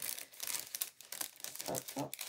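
Clear plastic packaging crinkling as it is handled, in quick irregular rustles.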